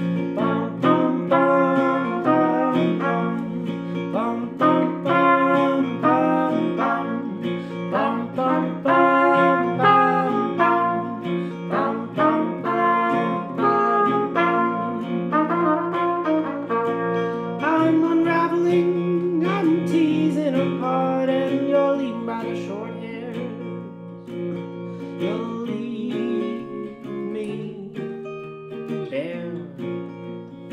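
Trumpet playing a melody over a strummed acoustic guitar in an indie-folk song. The trumpet stops about two-thirds of the way through, leaving the guitar strumming more quietly.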